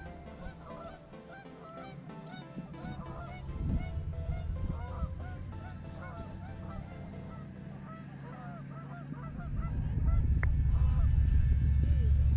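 A flock of geese honking, many short calls overlapping throughout. About ten seconds in, a low rumble swells and becomes the loudest sound.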